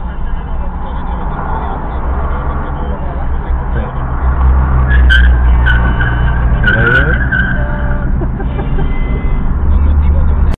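Car engine and road rumble heard from inside the cabin of a moving car, growing louder about four seconds in as it pulls away. Brief high-pitched squeals sound between about five and seven seconds in.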